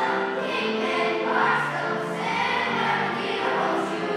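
Elementary school children's choir singing a song in sustained notes, under a conductor's direction.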